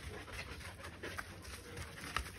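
Podenco dogs panting faintly as they play, with a few soft clicks.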